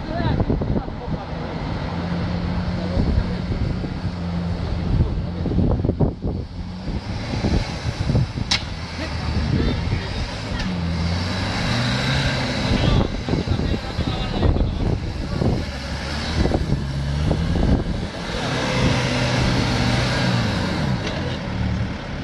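Jeep Wrangler Rubicon's engine working hard in low range as it crawls up a steep, muddy, rutted firebreak, its revs rising and falling repeatedly as the driver feeds throttle over the ruts. A couple of sharp knocks come from the chassis and suspension striking the ground along the way.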